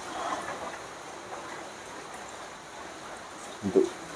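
Steady background hiss of noise, even and unbroken, under a pause in conversation; a man's voice starts up near the end.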